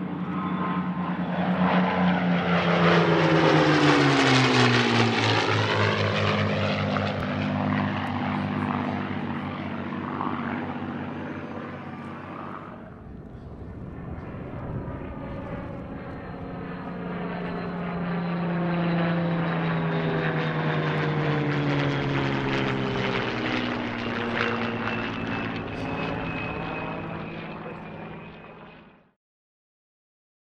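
A P-51D Mustang and a P-63F Kingcobra fly by together in formation, their V-12 piston engines and propellers droning as the pitch drops with each pass. The sound swells to a peak a few seconds in, then jumps to a second pass about midway. It cuts off abruptly near the end.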